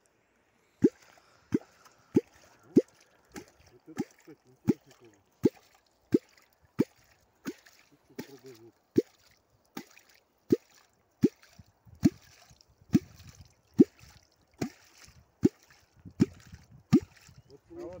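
A catfish kwok (квок), a curved metal rod with a handle, being struck into the water in a steady rhythm. It makes about two dozen deep, falling 'bloop' plops, roughly three every two seconds. This is the sound used to call catfish.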